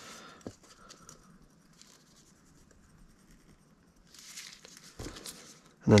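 Faint scratching and rustling of a naphtha-soaked pipe cleaner being worked through the posts of a saxophone key, with a light click about half a second in and a short rustle and knock near the end.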